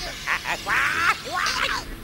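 A cartoon character's high-pitched nonsense vocalizing: four or five short cries with swooping, bending pitch, the longest in the middle, stopping just before the end.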